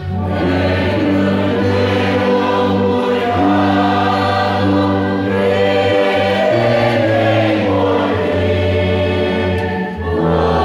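A congregation singing a hymn in unison with a church orchestra, a tuba close by holding low sustained notes under the voices. The music pauses briefly at the start and again just before the end, between lines of the hymn.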